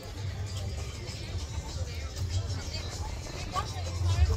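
Wind buffeting the microphone in a steady low rumble, with music and people's voices faint in the background.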